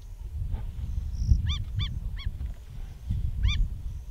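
Lion cubs feeding on a zebra carcass, with low rough tearing and chewing noise. A bird calls in short arched notes over it: three quick notes about halfway through and one more near the end.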